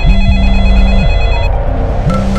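A mobile phone ringtone rings as a steady, high electronic tone that stops about one and a half seconds in, over dramatic background music with a low sustained note.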